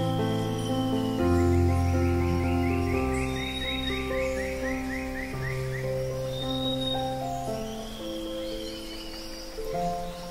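Slow, calm acoustic guitar instrumental music, with birdsong laid over it: a rapid run of repeated chirps from about one to four seconds in, and a few single whistled calls later.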